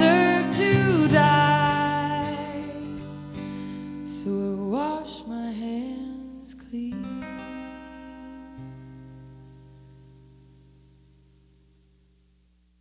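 A woman sings the closing phrases of a song over strummed acoustic guitar. The last chord rings on and fades away to silence near the end.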